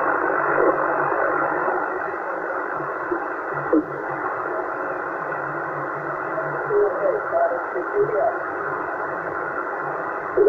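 Hiss and static from a Yaesu HF transceiver's speaker as it is tuned down through the 27 MHz band. A few faint, garbled snatches of distant voices slide in and out of tune over the noise.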